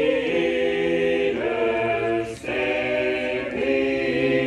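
A group of singers sings a hymn a cappella in harmony, holding long chords, with a brief dip between chords about two and a half seconds in.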